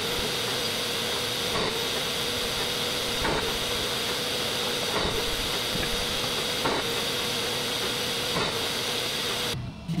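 Makera Carvera Air desktop CNC machining an epoxy block on its fourth (rotary) axis: a steady hiss with a steady whine, and a faint tick about every second and a half.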